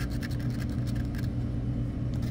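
Scratch-off lottery ticket being scraped with a hard tool in a run of short, quick strokes, over a steady low hum.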